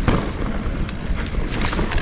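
Sonder Evol GX mountain bike rolling along a dirt trail: tyre noise over the ground with frequent small knocks and rattles from the bike, and wind rumbling on the microphone.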